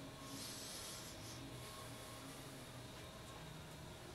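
Quiet room tone: a steady faint hum with two short, soft hisses about half a second and a second and a half in.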